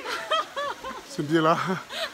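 People talking, with a brief chuckling laugh; speech only.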